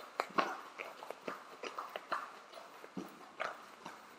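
Irregular soft taps and thumps of several people's feet landing on exercise mats during mountain climbers, a few per second.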